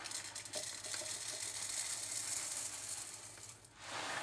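Whole roasted coffee beans poured from a paper bag into a glass French press carafe: a steady rattling pour that stops suddenly just before the end.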